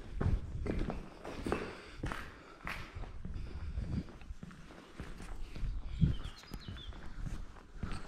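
Footsteps walking across a concrete floor scattered with rubble and broken plaster, a few steps each second.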